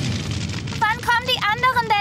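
A bonfire flares up with a low rushing noise. About a second in, children's high-pitched voices break into short excited exclamations.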